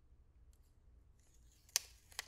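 Faint handling ticks and a soft scrape as a compact eyeshadow palette case is worked open, ending in one sharp click of the lid near the end.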